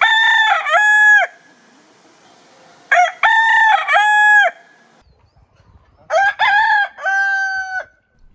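Bantam Vorwerk rooster crowing three times, about two seconds apart.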